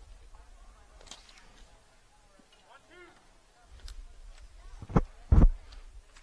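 Faint outdoor ballfield ambience with a brief distant shout about three seconds in, then two heavy low thumps close together near the end.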